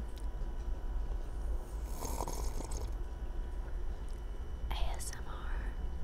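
Sipping coffee from a mug with a lavalier mic clipped to it, so the slurps are heard very close up: two short airy sips, one about two seconds in and another near the five-second mark.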